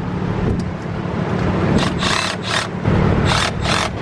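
A car engine running with a low steady hum. In the second half it is broken by several short bursts of rushing, hiss-like noise.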